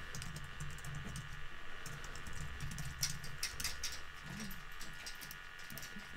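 Typing on a computer keyboard: scattered keystrokes in short runs with pauses between them.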